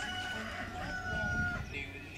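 A rooster crowing: one long call, held level and ending about a second and a half in.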